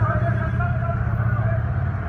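A vehicle engine running with a steady low rumble, with voices over it.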